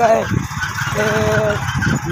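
A short, steady honk held for about half a second, about a second in, over wind buffeting the microphone.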